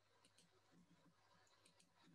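Near silence, with a few very faint clicks.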